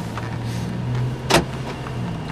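Car cabin noise while driving: a steady low engine and road hum, with one sharp click a little past midway.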